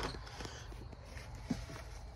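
Faint handling noise from the phone and the man's hands at a wooden subwoofer box, over a low steady hum, with one light knock about one and a half seconds in.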